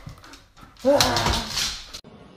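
A husky gives a short whining yelp about a second in, a brief cry that rises then falls in pitch, mixed with a person's laughter.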